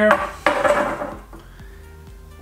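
A rifle cleaning rod clattering and scraping as it is laid aside on the bench, a short burst about half a second in that dies away within a second.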